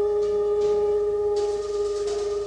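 Twelve-tone chamber music for flute, English horn, horn, cello and percussion: a single nearly pure note held steadily, with a few soft hissy strokes high above it.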